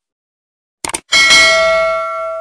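Two quick mouse-click sound effects, then a bell-like notification ding that rings on and slowly fades. These are the stock sounds of a subscribe button and notification bell being clicked.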